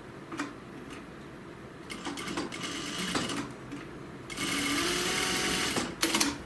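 JUKI industrial lockstitch sewing machine stitching in two runs: a short, uneven burst about two seconds in, then a longer steady run from about four seconds that stops just before the end. There is a sharp click shortly after the start.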